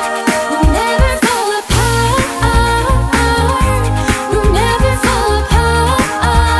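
Pop song sung a cappella: a vocal group singing in harmony over a sung bass line, with beatboxed vocal percussion keeping a steady beat.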